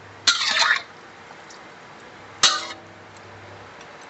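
Metal spatula clattering and scraping against a wok for about half a second, then a single sharp clank with a short metallic ring a couple of seconds later.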